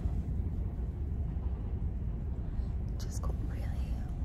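Steady low rumble inside the ferry MV Loch Seaforth at sea, with a woman whispering a few words about three seconds in.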